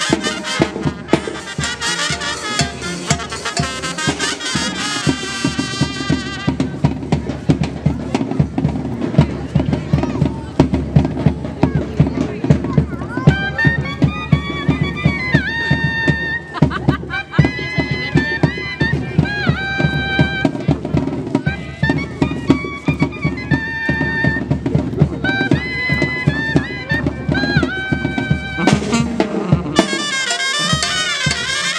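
Dance music with a steady, fast drumbeat throughout. A high wind instrument plays at the start and comes back about halfway through in short held notes.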